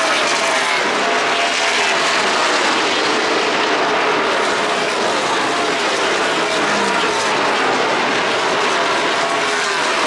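A field of NASCAR stock cars racing, their V8 engines blending into one steady, loud drone.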